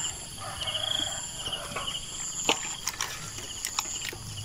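Crickets chirping in repeated pulsing trills over a steady high whine, with a few light clicks and rustles from hands working a nylon gill net.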